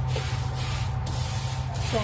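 A spatula stirring and scraping dry flakes around a dry metal wok: a continuous rustling, scraping shuffle with a steady low hum underneath.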